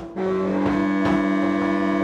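Free-improvised jazz: two saxophones enter just after the start and hold long, steady low notes, over regular percussion strikes about two or three a second.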